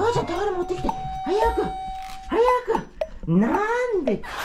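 Golden retriever giving a series of short, rising-and-falling excited yelps, with one long high whine held for over a second near the start.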